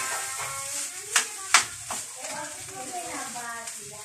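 Indistinct voices talking over the faint hiss of fried rice frying in a pan, with two sharp clicks a little over a second in, close together, from a spatula striking the pan as the rice is stirred.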